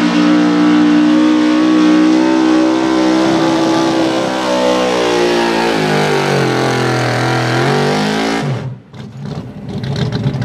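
Outlaw 4x4 Dodge Ram pulling truck's engine running hard at high revs under load as it drags a weight-transfer sled. From about six seconds in the pitch sags as the engine bogs down under the sled. At about eight and a half seconds the sound drops away suddenly as the throttle comes off at the end of the pull, and the engine note returns just before the end.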